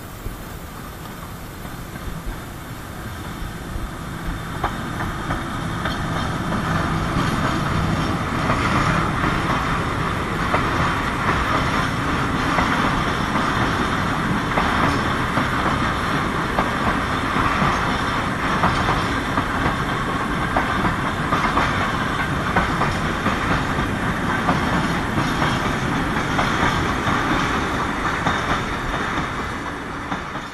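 Loaded freight train of open-top wagons rolling past close by, with a steady rumble and wheels clicking over the rail joints. It grows louder over the first several seconds as it comes near, then holds steady, dropping away at the very end.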